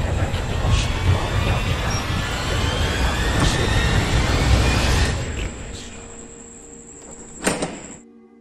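Rustling and rumbling handling noise, then a metal barrel bolt on a wooden door worked by hand, with one sharp metallic clack near the end.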